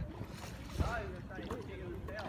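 An indistinct person's voice, a few short soft utterances, over a steady low rumble of wind on the microphone.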